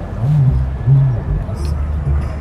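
Two short, low-pitched vocal sounds, a low voice murmuring, over a steady low rumble.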